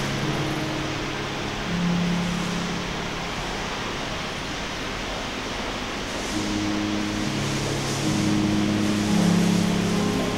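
Ambient electronic drone soundscape: low sustained tones that step to new pitches every few seconds over a steady hiss of noise, swelling near the end.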